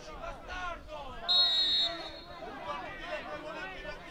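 Referee's whistle: one short, shrill blast of about half a second, about a second and a half in, signalling the free kick to be taken. Voices of players and spectators go on around it.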